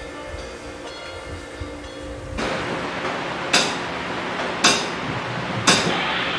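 A faint music bed, then about two and a half seconds in a live band's room noise with sharp metallic ticks about once a second: a count-in tapped out just before a worship band starts to play.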